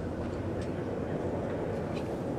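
Steady low rumbling background ambience, with a faint click or two.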